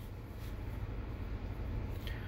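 Quiet steady background hum and hiss with no distinct sound event: room tone while a nail primer brush works silently.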